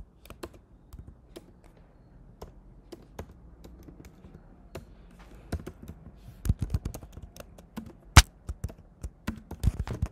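Typing on a computer keyboard: irregular keystrokes, sparse for the first few seconds and coming in quicker runs in the second half, with one sharp, loud key strike just after eight seconds.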